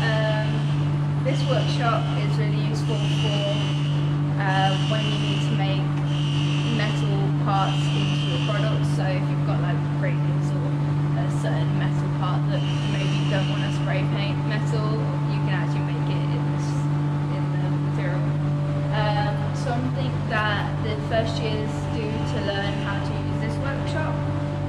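A loud, steady low mechanical hum that holds one pitch throughout, with a woman talking over it.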